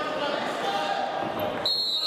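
Voices echoing in a large sports hall during a freestyle wrestling bout. About a second and a half in, a high, steady whistle starts and holds.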